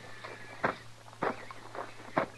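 Radio-drama sound-effect footsteps: three separate heavy steps about half a second apart as men climb down from their horses.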